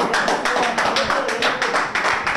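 A small group clapping quickly and densely, with voices calling out over the claps.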